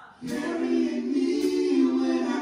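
A group of voices singing a gospel worship song in long held notes, with little instrumental backing, coming in about a quarter second in after a brief pause.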